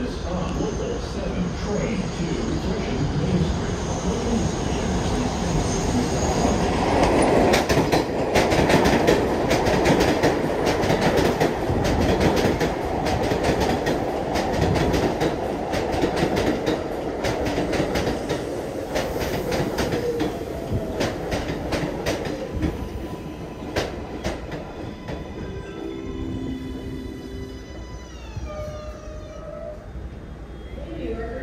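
R188 subway train pulling into an elevated station, its wheels clacking over the rail joints, loudest as the cars go by. Near the end the propulsion whine falls in pitch as the train brakes to a stop.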